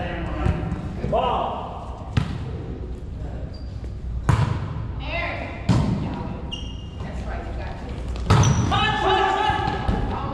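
A volleyball struck by hand during a rally, four sharp smacks about two seconds apart, each echoing in a large gym, with players calling out between hits.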